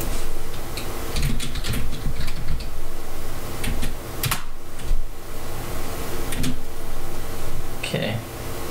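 Keys clicking on a computer keyboard as a short console command is typed: scattered quick clicks over a steady low electrical hum.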